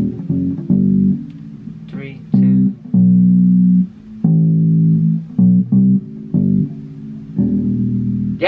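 Electric bass guitar played slowly and haltingly by a first-time bass player: a riff of plucked low notes, some short and some held for about a second, mixing open strings with fretted notes. An open-string note in the riff is missed.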